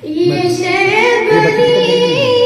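A girl singing an Urdu nazm into a microphone, one voice alone, holding long notes with vibrato; the voice comes in at the start and climbs to a higher held note about half a second in.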